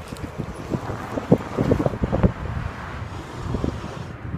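Wind buffeting a phone microphone: an uneven low rumble with scattered short bumps.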